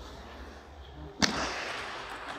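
A single sharp knock about a second in, echoing through a large hall over a low murmur of background noise.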